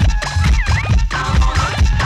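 Ghetto house DJ mix from cassette: a heavy, fast kick-drum beat with turntable scratching swooping up and down in pitch over it. About a second in, the scratched sound gives way to a different, denser sample.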